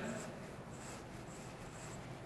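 Faint rubbing of a duster wiping a whiteboard clean.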